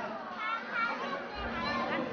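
Background chatter of a crowd of visitors, with children's voices calling out among them.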